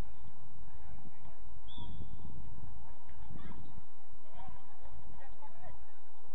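A few short, distant honk-like calls over a steady low rumble.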